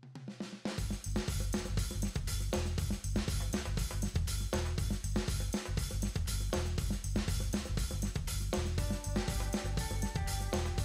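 Background music with a steady drum-kit beat; a melody line comes in near the end.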